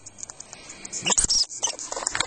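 Norwegian lemming squeaking in short, high-pitched bursts, several in quick succession in the second half: the defensive, aggressive calls of an agitated lemming. A single sharp knock about a second in.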